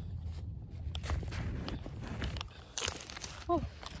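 Crinkling and rustling of a foil drink pouch as it is held and sipped from, with scattered small clicks, a brief sharper crinkle about three seconds in, and a low steady rumble under it all.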